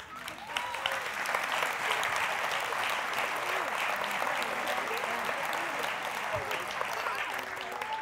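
Congregation applauding, swelling over the first second and then holding steady, with a few scattered voices calling out through the clapping.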